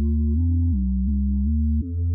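Hip-hop instrumental beat in a stretch without drums: low synth tones hold a few sustained notes that change every half second or so, with a faint high tone above.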